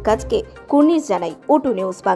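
A news narrator's voice reading in Bengali over background music with a steady low bass.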